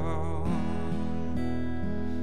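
Solo acoustic guitar strummed in a slow, even rhythm, a new strum roughly every half second.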